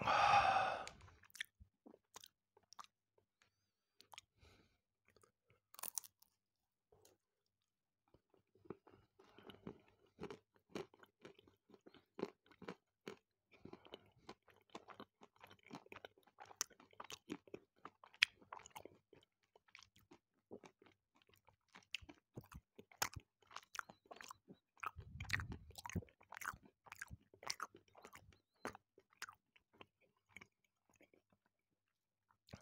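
Close-miked mouth chewing a bar of milk chocolate with whole hazelnuts and almonds: many short, crisp crunches as the nuts break, with wet chewing sounds between them. The loudest sound is a single loud mouth noise in the first second, just after a sip of tea.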